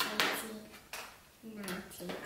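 Plastic Numicon ten-shape pieces set down on a tabletop: a sharp click at the start and a lighter tap about a second in.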